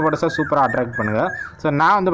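Only speech: a man talking in Tamil, without a break.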